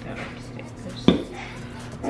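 A ceramic mug knocks once, sharply, on the kitchen counter about a second in, over a faint steady hum.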